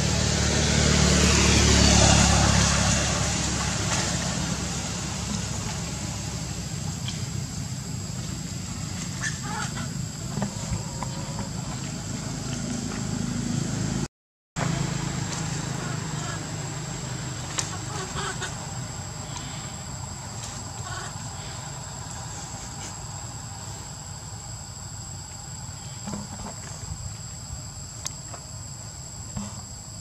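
Leaves and branches rustling and shaking in the first few seconds as macaques move through a tree, then steady forest background with a thin, high, steady insect drone and occasional small snaps. The sound cuts out briefly near the middle.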